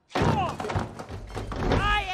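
Animated film soundtrack: a heavy thud as a character slams onto a hard floor, with a short falling cry just after it and background score.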